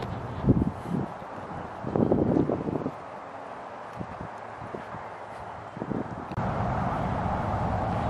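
Footsteps and handling knocks from walking with a handheld camera, with wind on the microphone. About six seconds in, a steady low drone comes in and holds.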